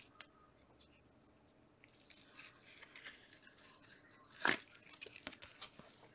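Faint rustling and sliding of gloved hands working a trading card into a plastic sleeve and rigid toploader, with a brief louder scrape of card on plastic about four and a half seconds in.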